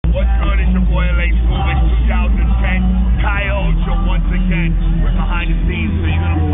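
A man talking close to the microphone, loud and fast, over a steady low rumble of street noise.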